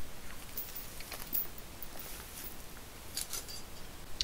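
Steel chain clinking in a few scattered light clicks and rattles as it is handled and laid over a car tire.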